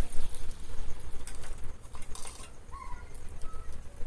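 Water pouring from a plastic watering can onto potted plants, fading out about halfway through, with a couple of faint bird chirps later on.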